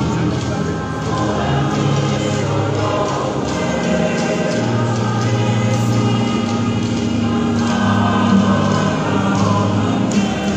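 A choir singing a church hymn with musical accompaniment, long low notes held steadily underneath.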